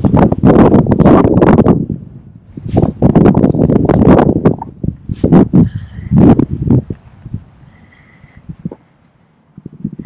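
Wind buffeting the microphone in gusts: loud, uneven bursts of low noise in three surges, dying down to a faint hush about seven seconds in.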